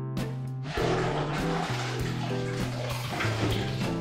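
Background guitar music, with water sloshing and splashing in a bucket from about a second in as hands are rinsed in it.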